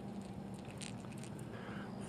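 Faint, scattered small clicks and rustles of hands handling a just-caught green sunfish and the crankbait's hooks, over a low steady hum.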